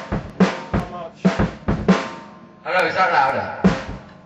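Drum kit played loosely: kick and snare hits at an uneven pace, with a cymbal crash about three seconds in and a last hit just before the end that rings away.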